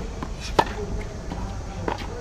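Tennis ball impacts in a practice rally: a sharp pop of ball on racket about half a second in, the loudest sound, and a softer knock near the end, over steady outdoor background noise.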